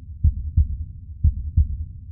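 Heartbeat-style outro sound effect: two low double thumps, one pair a second, over a steady low hum.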